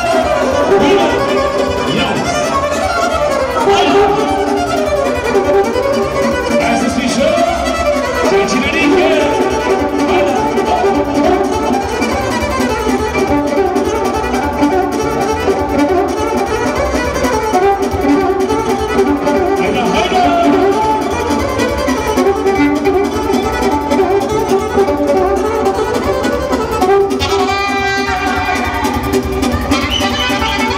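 Live wedding band playing lively Romanian folk dance music for a hora, a saxophone carrying the melody over a steady beat.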